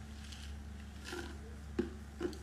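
Soft gulping and swallowing as a drink is drunk from a large plastic cup, with a short sharp knock near the end.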